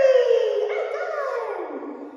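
Small puppy howling and whining: two drawn-out cries, each falling in pitch, the second trailing off lower and quieter.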